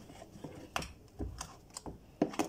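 A utensil beating thick blended-bean akara batter in a bowl, with a few faint, irregular clicks and taps as it knocks against the bowl.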